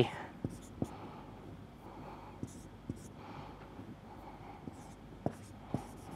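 Marker pen writing on a whiteboard: faint scratchy strokes with small scattered taps as symbols are written.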